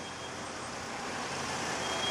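Steady street traffic noise, an even rush of passing vehicles with no single event standing out, growing slightly louder.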